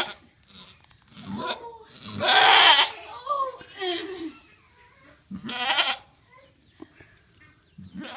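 A doe goat in labour bleating several times as the kid in its sac is pushed out, the loudest and longest call about two seconds in and another strong one past the middle.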